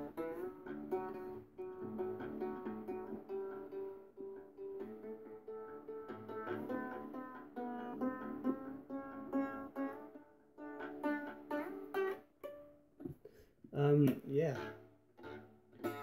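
Homemade three-string fretless lute, built along the lines of a Japanese shamisen, being plucked. A melody runs on the single lead string over the steady sound of the two drone strings. The playing stops about three-quarters of the way through.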